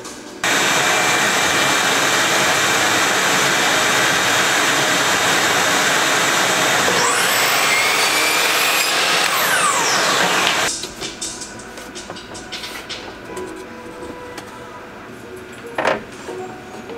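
Miter saw cutting a wooden wall plank, with its dust-extraction vacuum running: a loud steady whir that starts suddenly and cuts off after about ten seconds. Partway through, the saw's whine rises and then falls away as the blade spins up and winds down.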